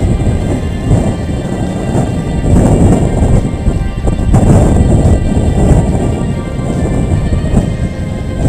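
Wind buffeting a GoPro's microphone: a loud, low rumble that swells and eases in gusts, strongest in the middle.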